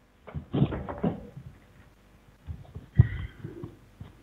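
Knocks, clicks and rustling from a headset microphone being handled and put on, with brief indistinct mumbling, heard over a video call.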